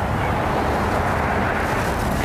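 Steady outdoor background rumble and hiss on a live field microphone, cutting in suddenly at full level.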